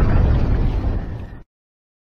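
Explosion sound effect, heavy in the bass, dying away and then cutting off suddenly into silence about one and a half seconds in.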